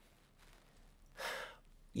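A man's single audible breath, drawn in about a second in during a pause in his speech and picked up close by a lapel microphone; otherwise quiet room tone.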